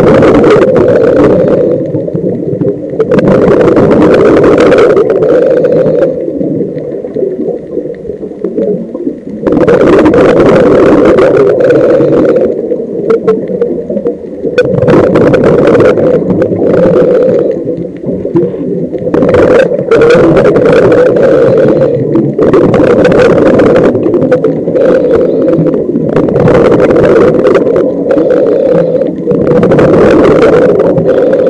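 Muffled underwater sound picked up by a camera over a reef: a steady low rumble with loud rushing, bubbling bursts every few seconds.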